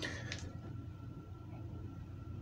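Quiet room tone: a low steady hum with a thin, faint high whine, and two soft ticks in the first half second as plastic bottling-wand parts are handled at the fermenter spigot.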